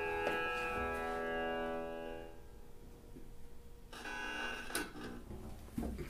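Double bass notes ringing and dying away over the first two or three seconds. A new bowed note starts about four seconds in, with a few light bow or handling knocks near the end.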